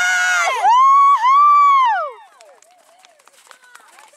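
Spectators cheering a clear show-jumping round: several voices whooping together, then one high-pitched whoop held in two long rising-and-falling calls that stop about two seconds in.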